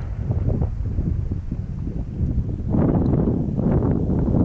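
Wind buffeting the microphone, a low rumble that grows stronger about three seconds in.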